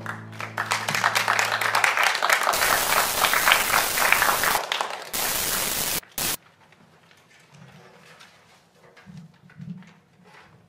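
Audience applauding for about five seconds, then cutting off abruptly about six seconds in. Faint low thumps and shuffling follow.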